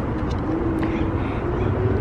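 Steady low outdoor rumble with a faint droning hum and a few faint clicks.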